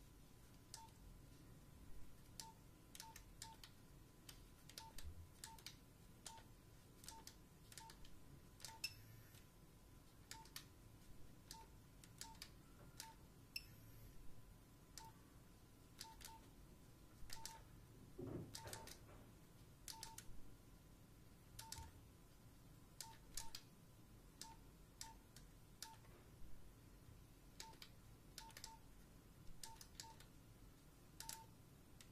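Nokia 3310 keypad tones: short, faint single-pitch beeps, each with a soft key click, as the keys are pressed at an uneven pace of about one a second, sometimes two in quick succession.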